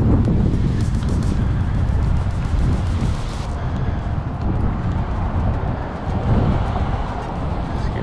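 Harley-Davidson Road Glide Special riding slowly on the street: a steady, heavy low engine rumble mixed with wind buffeting the microphone.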